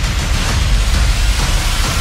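Film trailer soundtrack: loud, dense action music layered with booming impacts and explosion-like effects.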